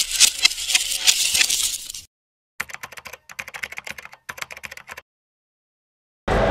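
Keyboard-typing sound effect: rapid key clicks for about two seconds, a short pause, then three shorter, softer runs of clicks, stopping about a second before the end.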